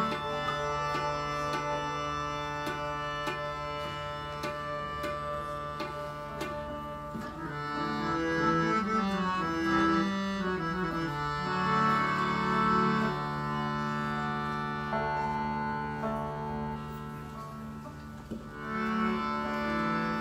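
Instrumental kirtan passage: a harmonium holds a steady drone and melody while tabla keeps the rhythm and a rabab is plucked, with the sharp strokes clearest in the first seven seconds.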